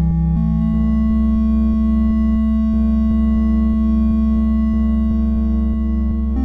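Electronic IDM track: sustained synthesizer tones over a steady low bass, the lead tone stepping up in pitch about half a second in, with a faint regular ticking pulse underneath.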